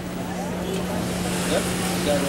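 Airport terminal background: a steady low hum under a wash of noise, with faint voices in the distance.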